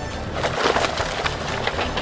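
Crackling rustle of paper banknotes and a bag as the bag is shaken out and the notes spill, starting about half a second in with many small crisp ticks.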